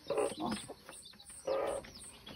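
Chicks peeping in short high chirps, with a hen's low clucking about one and a half seconds in.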